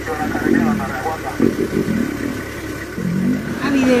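A vehicle engine running steadily under irregular rough growling from lions fighting.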